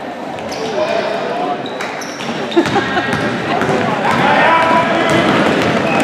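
Game sound of a basketball game in a gym: the ball bouncing, sneakers squeaking on the hardwood court, and players and spectators calling out, echoing in the large hall. A sharp knock stands out about two and a half seconds in.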